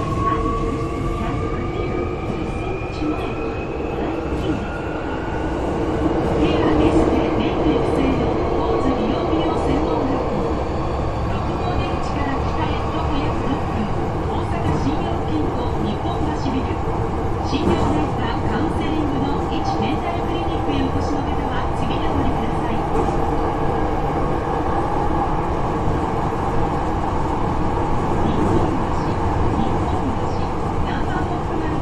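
Hankyu 8300-series electric train heard from inside the car as it pulls away and gathers speed: the traction motors' whine climbs steadily in pitch over the first dozen or so seconds. It then settles into a steady running rumble with scattered clicks from the wheels on the track.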